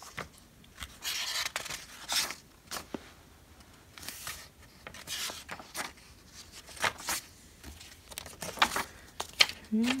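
Paper pages of a large softcover workbook being turned by hand, rustling and swishing several separate times at uneven intervals.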